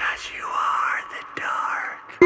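A person whispering in two breathy phrases, each swelling and fading away, with no clear pitch to the voice.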